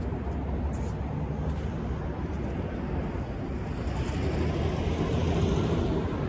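Steady low outdoor rumble of traffic and wind, swelling louder for a couple of seconds near the end.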